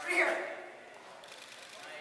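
People's voices: a short, loud vocal call right at the start, then quieter talk.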